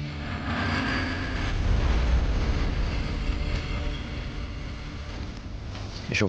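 A deep, noisy dramatic sound effect from the soundtrack that swells to its loudest about two seconds in and then slowly fades.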